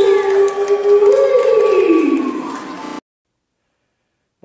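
A man's long drawn-out whoop, held, then swinging up and falling away, with other voices behind it; the sound cuts off abruptly about three seconds in.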